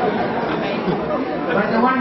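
Audience in a hall laughing and chattering after a comedian's punchline.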